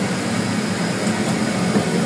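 Turboprop engine and propeller heard from inside the cabin of a small airliner while taxiing: a steady drone with a low hum.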